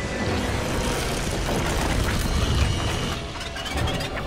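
Film action soundtrack: dramatic score mixed with dense mechanical sound effects over a low rumble, swelling slightly midway.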